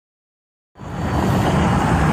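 Silence, then about three-quarters of a second in a loud, steady rushing whoosh with a low rumble underneath fades in quickly: the sound effect of a flying fireball in a logo intro.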